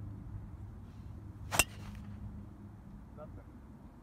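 Golf driver striking the ball off the tee: one sharp hit about a second and a half in.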